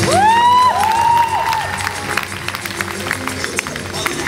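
Audience cheering and clapping over the performance music, opening with two loud rising calls from the crowd in the first second and a half.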